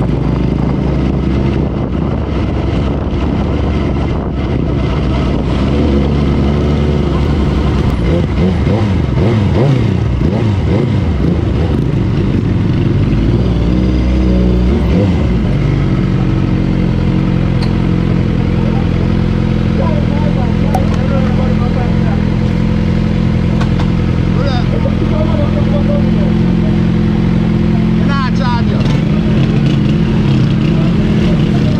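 Suzuki sport motorcycle engine heard from the rider's mic, its note rising and falling repeatedly through the middle, then holding a steady note for the second half.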